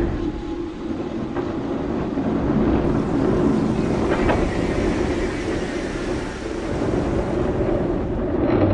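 A steady, dense low rumble with a hiss above it, and a couple of faint knocks, one about a second and a half in and one about four seconds in.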